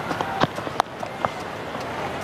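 Cricket bat striking the ball, one sharp crack about half a second in, followed by a few lighter clicks over the ground's steady background murmur.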